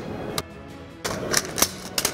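A handful of sharp metallic clicks and clacks from an AR-style rifle being worked through a reload on a shield-mounted spare-magazine carrier: magazine release, magazine seating and bolt release. One click comes near the start, and four more follow in quick succession over the second half.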